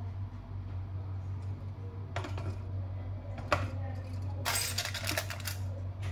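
A plastic steamer basket clicking and knocking as it is set into an electric cooker pot, with one sharp clack about three and a half seconds in, then about a second of aluminium foil crinkling. A steady low hum runs underneath.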